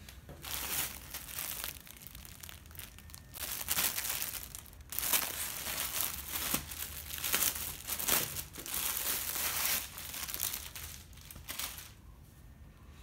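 Clear plastic packaging bag crinkling as it is handled and opened to get the folded nonwoven green screen fabric out, in irregular bursts that are busiest in the second half.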